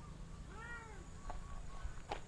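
A domestic cat meowing once: a short call that rises and then falls in pitch, faint against the open-air background.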